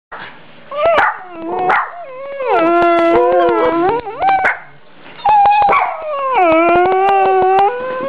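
Dog howling: a couple of short yelps, then two long howls of about two seconds each, each sliding down in pitch at the start and then held.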